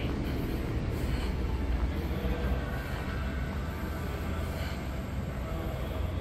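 Low, steady rumble of a train running on nearby tracks, heard muffled from inside the station hall, with a faint whine about halfway through.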